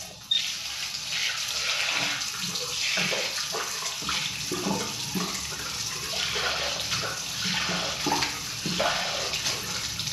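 Water running steadily from a bathroom tap, with uneven splashing under the stream. The flow stops near the end.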